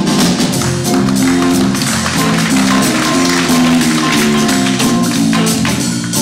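Live jazz combo of electric guitars, electric bass and drum kit playing, with chords and a walking bass line under steady cymbal strokes.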